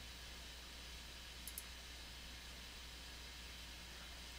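Faint steady hum and hiss of a quiet room, with a quick double click of a computer mouse about one and a half seconds in.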